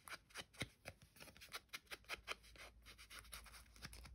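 Faint, irregular clicks and rustles of cardstock tags being handled and turned over in the hands.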